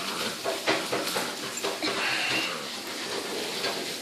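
A blue pocket American Bully puppy playing tug-of-war: scattered scuffs, clicks and rustles as it pulls and shakes a cloth toy and scrabbles on a tiled floor, with a brief faint higher sound about two seconds in.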